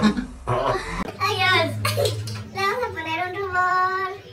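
A person laughing in short bursts for about a second, then a high-pitched voice with wavering, bending pitch that settles into a drawn-out held note near the end.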